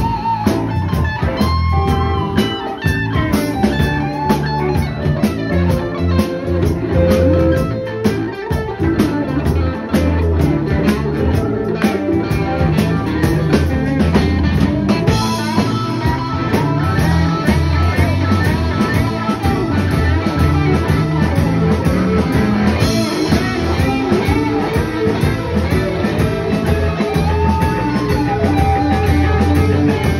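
Live blues-rock band playing an instrumental stretch with no singing: electric guitar over bass, keyboards and drums.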